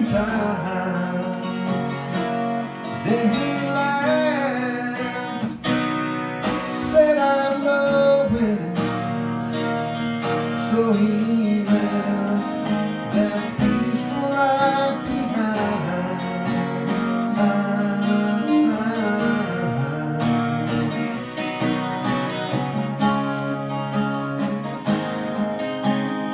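Washburn WJ45SCE12 twelve-string acoustic guitar strummed, with a man singing over it for much of the passage.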